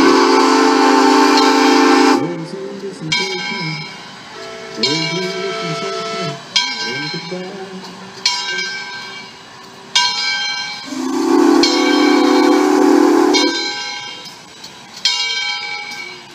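Southern Railway No. 630 steam locomotive approaching, sounding two long blasts on its steam whistle, one at the start and one about eleven seconds in. Between the blasts its bell rings about once every second and a half to two seconds.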